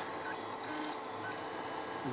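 Mendel Max 2.0 3D printer running a print: its stepper motors, driving the print head, give short faint whining tones that change pitch from one move to the next, over a steady low hum.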